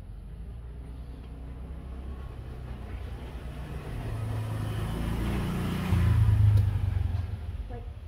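A motor vehicle passing by, its low engine rumble building steadily, loudest about six seconds in, then fading away.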